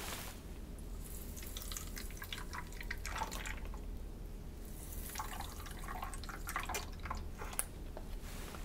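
Sterile water trickling and dripping from a squeezed packet into the water seal chamber of an Atrium Oasis chest drain, with many small irregular drips, as the water seal is filled during setup.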